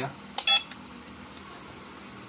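A sharp click, then a single short electronic beep about half a second in, from the RC excavator's electronics.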